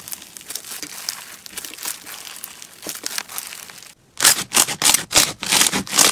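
Slime being worked by hand: a fine, steady crackling for about four seconds, then a run of loud, separate crunchy squishes as hands press down on white bead-filled crunchy slime.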